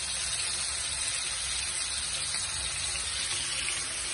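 Spiced prawns sizzling in a frying pan: a steady, even hiss.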